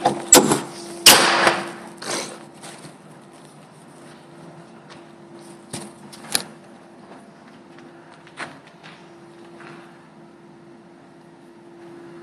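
Doosan DL420 wheel loader running with a steady hum. Several loud knocks and a clatter come in the first two seconds, and a few lighter clicks follow later.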